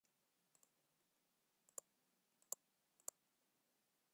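Faint computer keyboard keystrokes in four quick pairs, about a second apart, as double backslashes are typed at the ends of lines of code.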